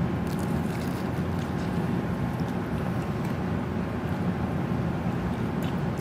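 Steady low room rumble, like ventilation noise, with a few faint soft clicks as two people bite into and chew chicken wings.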